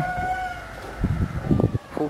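A long animal call: one high note with overtones, falling slightly in pitch and fading out within the first second, followed by a few short, low sounds.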